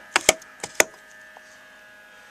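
Red rotary battery-selector switch on a solar disconnect panel being turned by hand, clicking through its detents: about four sharp clicks within the first second. It moves the north solar array from the 12-volt charge controller back over to the 24-volt one.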